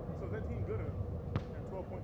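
A basketball strikes once with a single sharp knock a little past halfway, over a steady low outdoor rumble.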